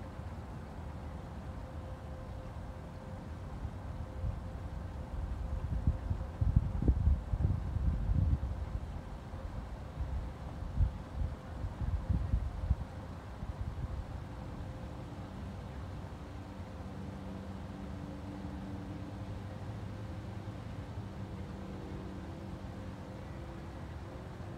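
Wind buffeting the microphone in irregular low gusts for several seconds, the loudest part. Then a distant engine drones with a steady low hum through the rest.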